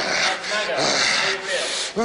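A man's harsh, raspy hissing growls in about four short bursts with brief gaps between them.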